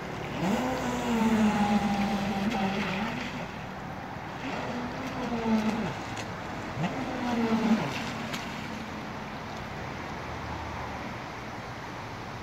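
Brushless electric motor of a Thundertiger Avanti 3S RC speedboat whining in three throttle bursts: the pitch jumps up as the throttle opens, holds, and drops away as it is let off. The last burst ends about eight seconds in.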